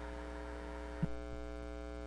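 Steady electrical mains hum from the meeting's microphone and sound system, with a faint click about halfway through.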